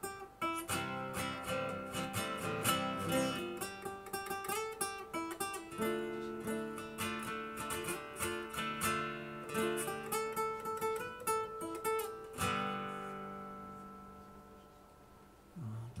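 Acoustic guitar played solo, chords strummed and picked in a steady rhythm; about twelve and a half seconds in a final chord rings out and slowly fades away.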